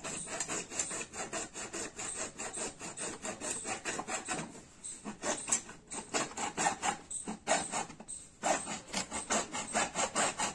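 Hacksaw cutting through a plastic PVC pipe in fast, regular back-and-forth strokes, with a couple of brief pauses.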